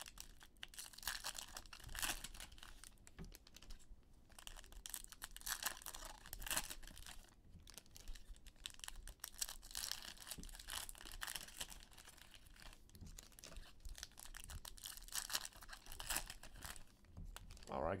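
Plastic wrapper of a trading-card pack being torn open and crinkled by hand, an irregular crackling rustle throughout, with the cards inside handled.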